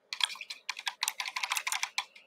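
Rapid typing on a computer keyboard: a quick run of key clicks, about seven a second, lasting most of two seconds.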